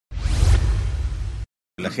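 Broadcast station-ident whoosh sound effect with a deep bass underneath, lasting about a second and a half and cutting off abruptly. A man's voice starts just before the end.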